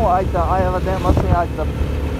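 A steady low rumble from a vehicle moving along a road, with a person's voice talking over it.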